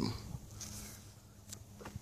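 A quiet pause in a man's talk: a faint steady low hum with a few small, scattered clicks.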